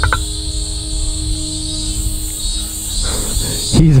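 Steady high-pitched drone of insects from the surrounding forest, with a low rumble underneath; a man's voice starts near the end.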